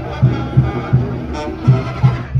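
Band music from a calenda street procession, with a steady bass drum beat about three times a second under sustained wind-instrument tones.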